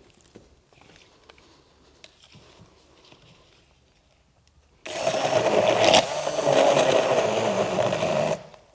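Handheld immersion blender switched on about five seconds in, running steadily as it grinds torn paper and water into pulp in a plastic jug. Before that, only faint handling clicks.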